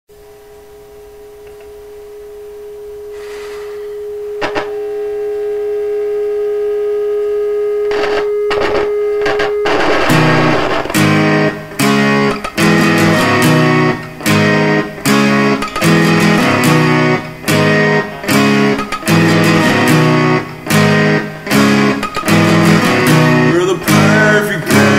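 Instrumental song intro on guitar: a held note swells in over the first ten seconds, then strummed chords come in loud, in a choppy rhythm broken by short stops less than a second apart.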